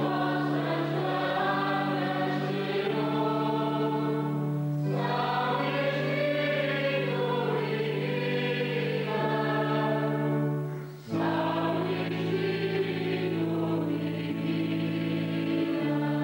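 Church choir singing a hymn over steady, held accompaniment chords, with a brief break about eleven seconds in before the next phrase.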